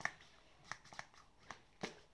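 Hand-held piston vacuum pump on a plastic cupping cup, drawing the air out with short strokes. It makes about five sharp clicks at uneven spacing, the loudest near the end.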